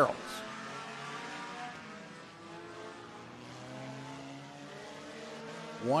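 Engines of front-wheel-drive compact race cars running laps on a dirt oval, heard at a distance as a steady drone of several engines whose pitch slowly rises and falls.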